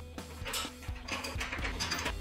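Ratchet wrench clicking in short, uneven strokes as a bolt is tightened, over background music.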